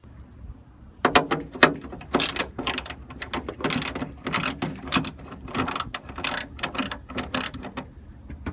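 Ratchet wrench with a socket clicking in quick repeated strokes as it works a bolt off a car trunk lid being dismantled, starting about a second in.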